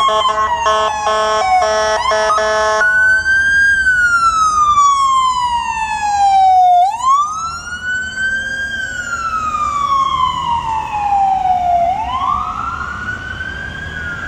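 Electronic siren of a Horton ambulance on a Ford F-550 chassis, sounding a slow wail that falls and rises again about every five seconds. It gets quieter from about halfway as the ambulance pulls away. In the first few seconds a chord of steady horn-like tones blares in short on-off pulses over the start of the wail.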